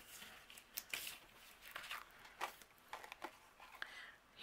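Faint crinkling and rustling of a clear plastic packaging sleeve as thin metal cutting dies are slid out of it by hand, in a few scattered crackles.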